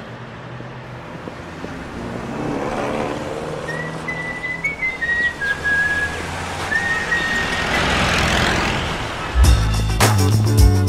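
Steady road-traffic rumble, with someone whistling a short tune of a few held notes from about four seconds in. Near the end, music with a strong bass and a steady beat starts.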